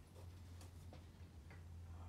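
Near silence: garage room tone with a steady low hum and a few faint ticks.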